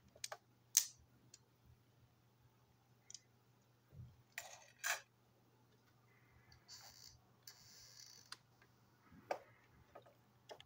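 Hard plastic toy-train parts being handled: a few sharp clicks and taps as the pieces are picked up and set down on a table, with a brief rustle near the middle.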